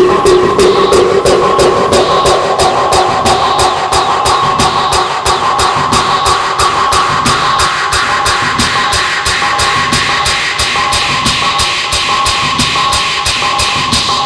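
Fast electronic free-party tekno music: a rapid, even beat under a held synth tone.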